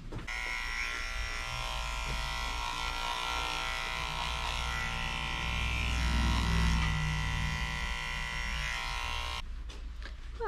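Corded electric dog-grooming clipper running with a steady buzz as it shaves mats out of a Great Pyrenees's fur behind the ear; it switches on at once and cuts off suddenly near the end.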